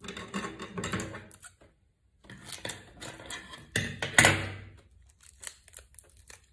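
Brown paper pattern pieces rustling and scraping on a table as they are handled, in three short spells, with a louder crackle about four seconds in and a few small clicks after it. Scissors are among the things handled.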